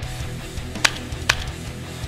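Rock music with electric guitar, cut through by two sharp shotgun shots a little under half a second apart, about a second in.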